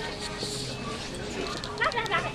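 Indistinct voices in a supermarket, with a few light knocks and rubbing as a handheld camera is passed from one person to another.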